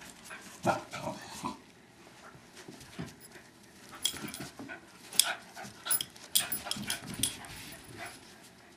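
Two small dogs, a West Highland white terrier and a Westie–schnauzer mix, play-wrestling with short dog noises in bursts. One burst comes about a second in, and a busier run follows from about four seconds in.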